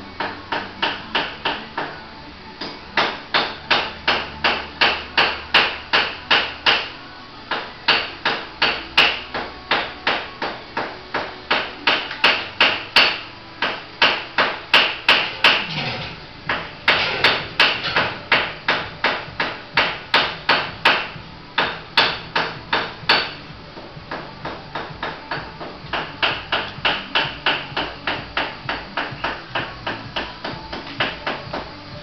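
Hand-operated chain hoist ratcheting, sharp even clicks about three to four a second in runs of several seconds with short pauses, as the chain is worked to lift an 800 kg solid-iron centreboard.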